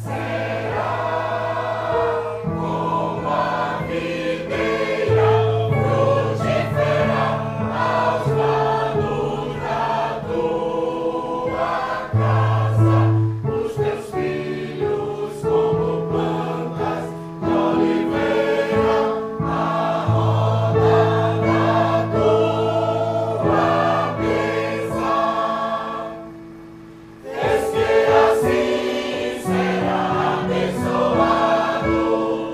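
A choir singing in parts with electronic keyboard accompaniment, long sustained low notes under the voices. The music drops away briefly near the end, then the choir comes back in.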